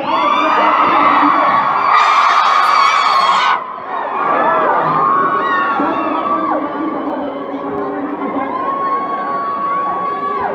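Audience cheering and screaming, many high voices shrieking at once, loudest from about two seconds in to three and a half seconds in, with one long held high scream near the end.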